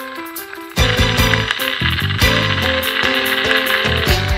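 Background music: a sparse, quieter passage, then drums and a full band come in loudly just under a second in, with a steady beat.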